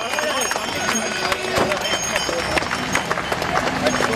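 Scattered hand clapping mixed with the chatter of a crowd of people standing close by.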